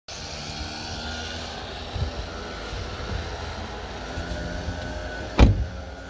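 Steady low outdoor rumble with a small knock about two seconds in, then one loud thud near the end: a van door being shut.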